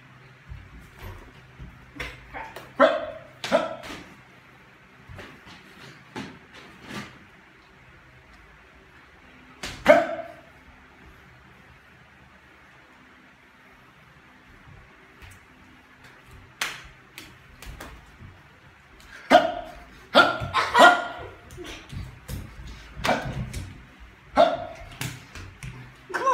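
A dog barking in short, separate barks: a few about three seconds in, a loud one about ten seconds in, and a quicker run of barks in the last seven seconds, over the slaps and shuffling of two people slap-boxing.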